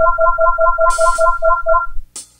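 Electronic synthesizer title jingle: a rapid two-note trill, about ten notes a second, over a held high tone, with a short hiss about a second in. It cuts off suddenly at the end.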